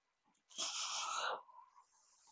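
A single breath close to the microphone, a noisy rush lasting just under a second, starting about half a second in.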